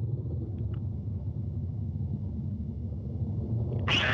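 A steady low rumble with no pitch to it, with a couple of faint ticks a little under a second in.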